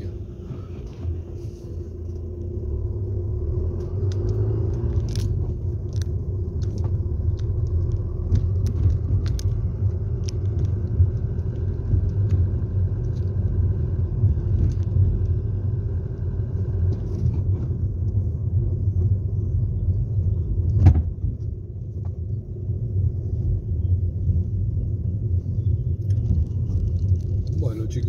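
Low, steady road and engine rumble heard from inside a moving car, with a few faint clicks and one brief louder thump about three quarters of the way through.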